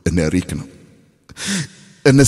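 A man's voice: a short spoken phrase, then a breathy sigh with a falling pitch about a second and a half in.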